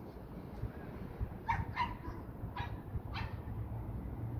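A dog barking four times in quick succession, starting about a second and a half in, over a steady low rumble.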